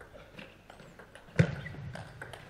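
Table tennis rally: the ball struck by rubber-faced bats and bouncing on the table in a few sharp clicks, the loudest about a second and a half in.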